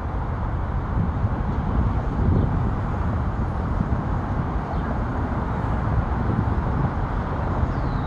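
Steady low rumble of outdoor background noise, with a faint short chirp of a bird near the end.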